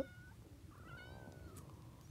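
A cat meowing faintly: one drawn-out call about half a second in, rising a little and then falling.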